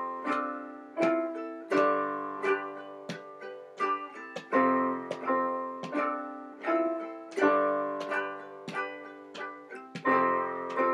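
Handmade resonator ukulele with a cherry body and a Republic cone, strummed in chords at a steady rhythm, with a keyboard playing along.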